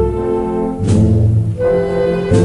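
Holy Week processional march played by a band of brass and wind instruments, held chords that change about every second.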